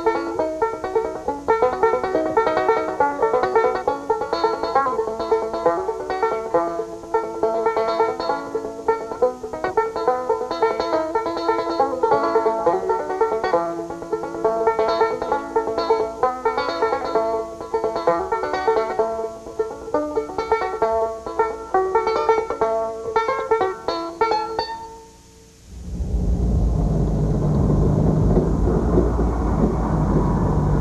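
Banjo music with quick picked notes runs until about 25 seconds in. After a brief drop in level it gives way to a steady low rumble of a truck engine.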